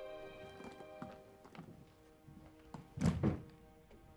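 Sustained music fading out, then a few light clinks of a metal spoon against a china soup plate. About three seconds in comes a heavy double thunk, the loudest sound.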